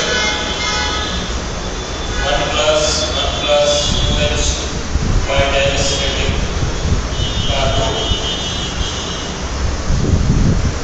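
A man's voice speaking in a lecture, over a steady low rumble.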